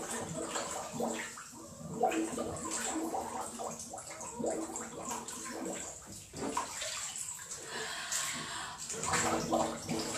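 Water splashing and bubbling around a muffled voice: a person counting aloud with the mouth under water, in uneven spurts.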